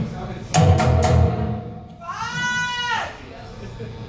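Live band music from guitar and percussion, with a loud hit about half a second in that rings on heavily for over a second. Then comes a single squealing tone that rises and falls for about a second.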